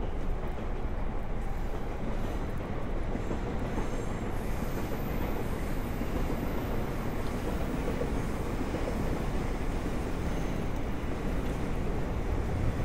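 A train running on the tracks below, giving a steady rumble of wheels on rail, with a faint high squeal from about four seconds in.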